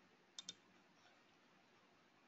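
Near silence with two faint clicks in quick succession, about half a second in.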